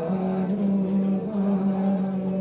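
Buddhist chanting: a voice holding long, steady notes that step slightly in pitch, with only brief breaks between them.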